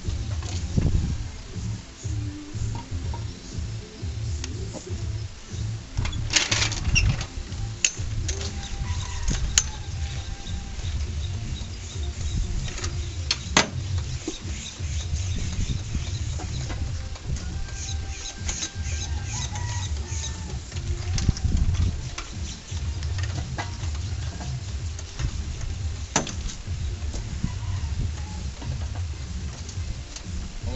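Low rumble on the microphone with a few sharp metallic clicks and knocks from the lifting chain and the hanging engine block being worked down onto the frame, a cluster about six seconds in and the sharpest near the middle.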